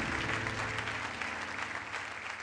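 A studio audience applauding, the clapping slowly dying down.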